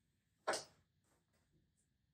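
Near silence in a small room, broken by one short spoken word about half a second in and a few very faint ticks after it.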